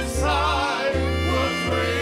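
Live Southern gospel accompaniment between sung lines: a fiddle plays a sliding fill over a steady bass line, with the singers' held voices fading under it.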